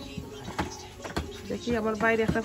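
A few sharp knocks, about two a second, as balls of paratha dough are slapped and pressed flat on a metal counter. A person's voice starts near the end.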